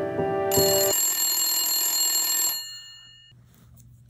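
Background music ends about a second in, overlapped by a phone ringing with a bright, high ring that stops about two and a half seconds in and dies away.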